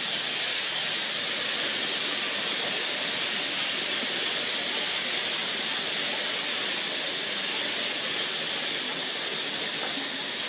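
A steady, even hiss that stays at the same level throughout, brightest in the upper middle, with no distinct calls, knocks or voices.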